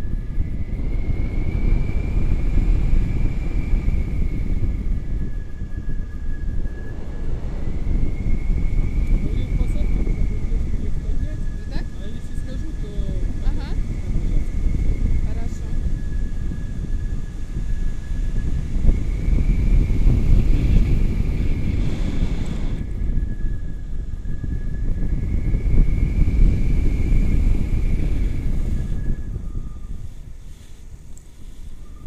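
Wind rushing over an action camera's microphone in flight under a tandem paraglider, a loud steady low rumble. A faint high tone wavers up and down above it every few seconds.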